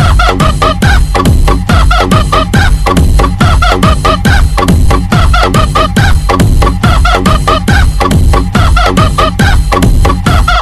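Loud DJ dance remix with a fast, even electronic beat and heavy bass, built on chopped samples of chicken clucking repeated in time with the beat.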